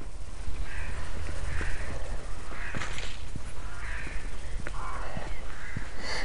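A crow cawing about five times, roughly once a second, over a low steady rumble.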